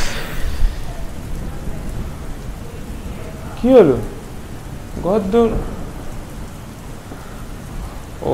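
A steady hiss with a low rumble under it, and two short voice calls, about three and a half and five seconds in.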